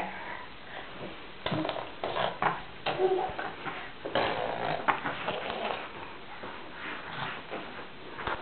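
Irregular knocks and rustles of a toddler moving about in a wooden cot, gripping and climbing on its rails and bedding, with a few short baby vocal sounds.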